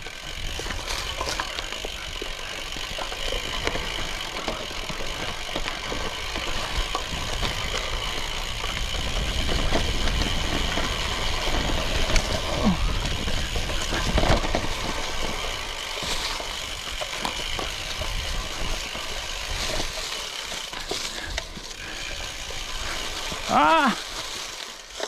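A carbon gravel bike rolling over a leaf-covered dirt trail: continuous tyre and drivetrain noise with knocks and rattles from the bumps, and wind rumbling on the microphone. A short voiced sound from the rider comes near the end.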